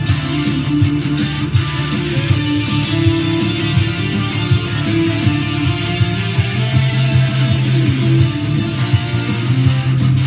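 Electric guitar, a 2018 Gibson Les Paul Classic Gold Top, played along with a full band recording with bass, one continuous passage of music.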